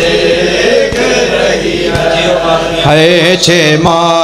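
A crowd of men chanting a noha in unison, with rhythmic chest-beating (matam) slaps about once a second. A single lead voice comes in strongly near the end, carrying the next line of the lament.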